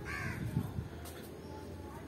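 A bird calls once, briefly, right at the start, over a low steady hum.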